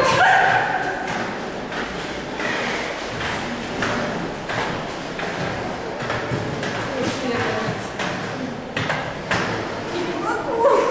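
Inline skate wheels rolling over a hard corridor floor: a steady rolling noise with scattered clicks and knocks from the wheels and skates.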